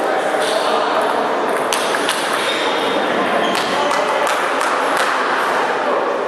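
Table tennis rally: a celluloid ball clicking sharply off bats and table, about a dozen hits at an uneven pace, over a steady background of voices in the hall.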